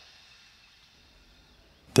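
A very quiet pause: faint hiss as the previous spoken phrase dies away. A man's voice starts speaking right at the end.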